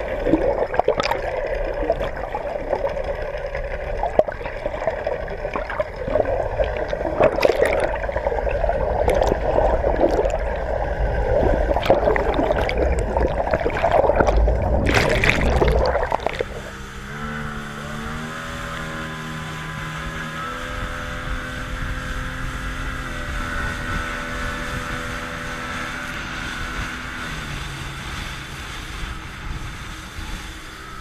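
Underwater sound through a submerged action camera: a noisy water wash with scattered clicks and pops, ending in a loud splash about fifteen seconds in as the camera comes out of the water. After that, a motorboat's outboard engine runs over rushing water, its pitch climbing, then holding steady, then dropping near the end.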